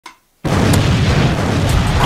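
An explosion sound effect played from a laptop. It starts suddenly about half a second in and carries on as a loud, deep rumble.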